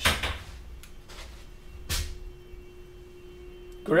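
A plastic lid is pressed onto a plastic bucket: a short scraping, rustling sound, then one sharp snap about two seconds in as it seats. A faint steady tone follows.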